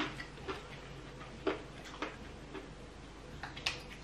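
Irregular light clicks and taps of tableware being handled at a meal, about six sharp ticks spread over a few seconds.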